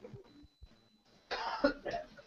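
A single short cough from a person, about one and a half seconds in.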